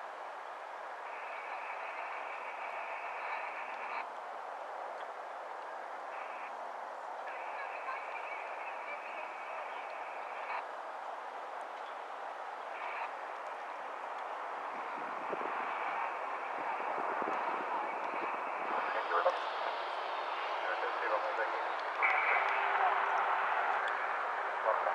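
Airband scanner radio: a steady hiss with transmissions that switch on and off every few seconds. Under it is the distant sound of a single-engine light aircraft taking off and climbing away. The sound grows louder in the second half.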